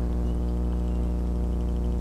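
Faint, irregular ticking of the rattle balls inside a jerkbait (an AllBlue copy of the Jackall Rerange 110 SP) as it is retrieved through the water, over a steady low hum.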